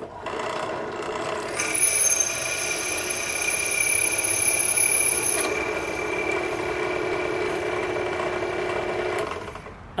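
Electric drill running a stepped cobalt drill bit that grinds against half-inch AR500 hardened steel plate, with a high squeal from about a second and a half in to about five seconds in. The bit is at the very bottom of the hole and is no longer advancing. The drill is switched off near the end.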